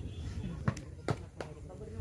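Three sharp smacks of a volleyball in quick succession, a little before and after the one-second mark, with voices in the background.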